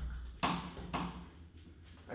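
Punches landing on a small inflated Ringside double end bag: two sharp hits about half a second apart within the first second, each fading quickly.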